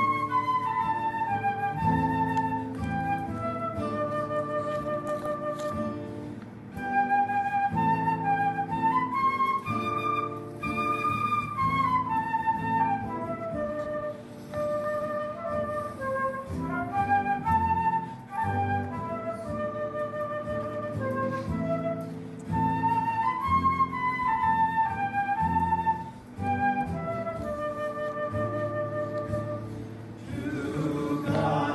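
Instrumental music: a slow melody in phrases of a few seconds over held low chords, with short breaks between phrases.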